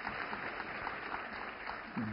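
Audience applauding steadily, many hands clapping, fainter than the speech on either side.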